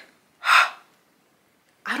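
A woman's single short, sharp breath, a gasp-like intake of air, about half a second in.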